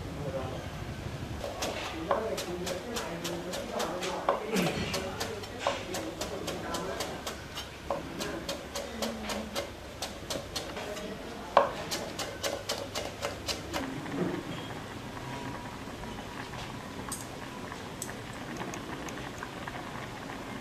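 Cleaver chopping turmeric leaves on a thick wooden chopping board: quick knocks, several a second, that stop about fourteen seconds in.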